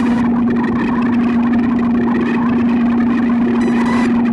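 A Make Noise modular synthesizer, the Tape and Microsound Music Machine with a Strega, holds a steady drone on one low pitch under a grainy, crackling texture. A short run of fast high ticks comes near the end.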